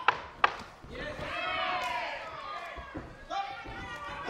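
Two sharp smacks of kickboxing strikes landing, about half a second apart, followed by loud shouting from ringside.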